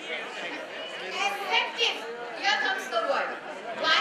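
Speech only: a woman lecturing into a microphone, heard over the hall's sound system.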